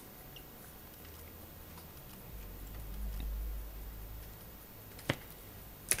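Faint handling noise as plastic model-kit sprues are moved about: a low rumble through the middle and one sharp click about five seconds in.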